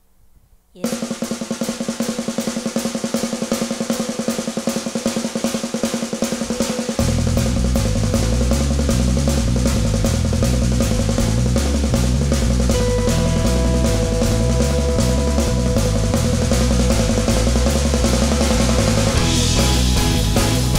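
A live rock band starts a song: drums and guitar come in under a second in with a fast, even beat, and the bass guitar joins about seven seconds in.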